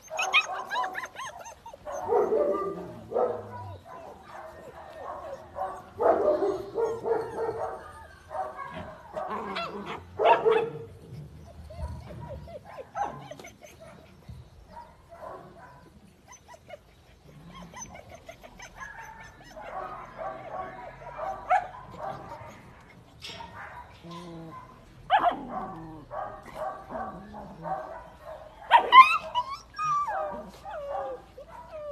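German shepherd puppies yipping, barking and whimpering in irregular bursts, with a loud sharp call near the end.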